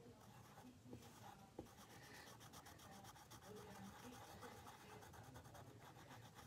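Faint pencil scratching on paper in quick repeated strokes, denser after about two seconds.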